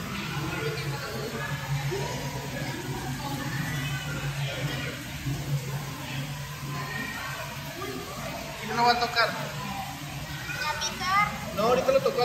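Indistinct chatter of visitors, children's voices among it, over a steady low hum that fades out partway through; two louder voice bursts stand out, about three-quarters of the way in and again near the end.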